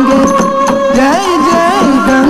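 Carnatic classical dance music: a held melodic note over evenly spaced percussion strokes, breaking into a sliding, ornamented melodic phrase about halfway through.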